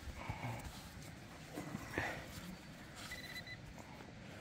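Quiet handling sounds of fingers rubbing soil off a small metal ring: soft rustles and a few small clicks, the sharpest about two seconds in. A short, faint high tone sounds about three seconds in.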